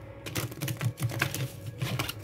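A deck of cards being riffle-shuffled by hand: a fast run of card edges flicking against each other.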